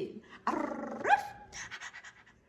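French bulldog puppy vocalizing: one short whiny bark-like call about half a second in, its pitch sweeping sharply upward at the end.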